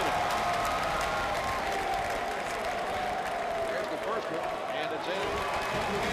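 Steady arena crowd noise of many voices and applause around a free throw, as the first shot is made.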